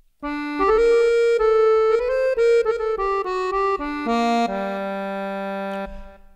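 Sampled Guerrini accordion virtual instrument played from a keyboard in its bassoon register: a melody of single notes, ending on a lower note held for over a second near the end.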